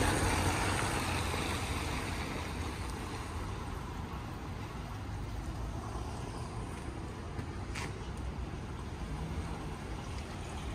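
Steady hiss of rain and wet-street noise, loudest at the start and settling over the first few seconds, with a single short click near the end.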